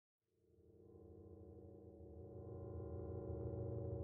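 A background drone of several held low tones fades in from silence just after the start and slowly swells.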